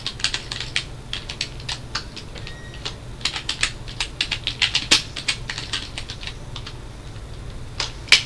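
Typing on a computer keyboard: a quick, uneven run of keystrokes that thins out and stops about six seconds in.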